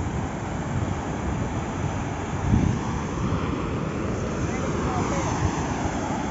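Sea waves breaking and washing over shore rocks, with wind buffeting the microphone in a steady rumble.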